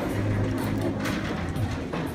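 Shop interior ambience: a steady low hum under a wash of background noise, with a few faint handling clicks.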